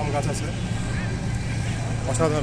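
Faint voices of people talking, briefly in the first half second, over a steady low rumble.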